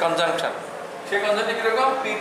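Speech only: a man talking, with a short pause about halfway through.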